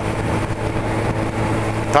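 Motorcycle engine running at a steady pitch while cruising, with wind noise over the microphone.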